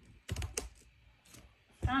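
A quick run of keystrokes on a keyboard, several sharp clicks within about half a second.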